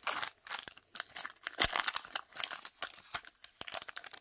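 A foil-lined Topps Chrome trading-card pack being torn open by hand, its wrapper crinkling and crackling in a quick irregular run, with the sharpest crackle about one and a half seconds in.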